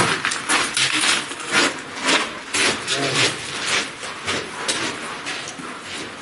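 Irregular knocks and scuffs of hikers' boots and gear moving over sandstone, a few a second, with brief snatches of voices among them.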